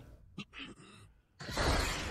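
A shattering, crashing sound effect. A single sharp click comes first, and about a second and a half in a dense crash of noise begins and carries on.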